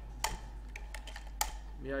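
A handful of separate keystrokes on a computer keyboard, spaced irregularly, as a line of code is typed.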